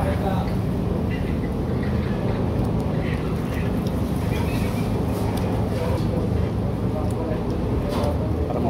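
Restaurant background noise: a steady low hum with indistinct voices and a few faint clicks.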